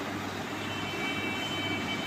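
Steady background noise with a low hum running under it. Faint high steady tones, like a thin whine, come in under a second in.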